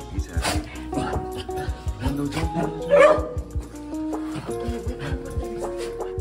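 A dog barks, the loudest bark about halfway through and a smaller one near the start, over background music.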